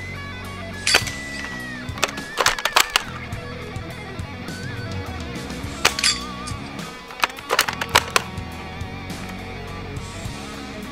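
Guitar background music, cut by sharp snaps of an airsoft rifle firing and BBs hitting small silhouette targets that are knocked over. The snaps come singly about a second in and again at two seconds, in a quick run of several just after, once near six seconds and in another run around seven to eight seconds.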